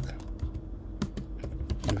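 Computer keyboard typing: a handful of separate keystroke clicks at an uneven pace.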